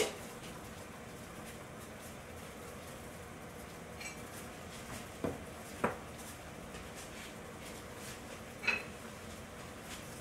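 Saucepan of water at a full rolling boil with gnocchi cooking in it: a steady bubbling hiss, with a few light clinks about five, six and nine seconds in.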